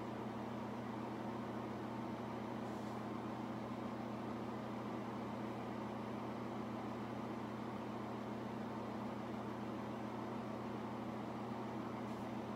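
Steady low hum of a running appliance, constant in pitch and level.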